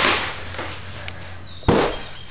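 Two loud bangs of things being hit or knocked about in a small room: a crashing one at the start that fades quickly, and a sharp bang with a low thud a little before the end.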